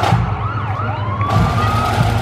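Pipe band striking in: bagpipes sliding up in pitch in several short swoops as the bags fill, over drumming.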